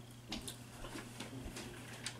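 Quiet room with a few faint, scattered clicks over a low steady hum.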